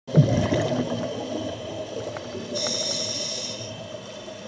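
Scuba diver breathing through a regulator underwater: a bubbling exhalation at the start, then a hissing inhalation about two and a half seconds in that lasts about a second.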